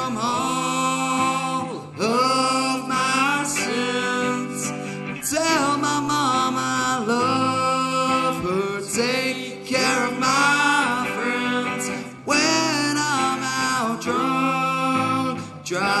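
A live rock band playing: electric guitar, electric bass and drum kit, with a male voice singing over them.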